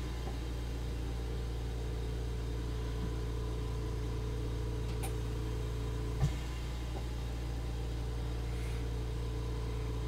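Steady low electrical hum of room background noise, with faint clicks of small plastic model parts being handled and a single soft bump about six seconds in.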